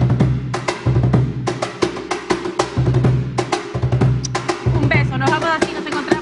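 Peruvian cajón played by hand in a quick, steady rhythm: sharp slaps on the wooden box mixed with deep bass strokes about once a second.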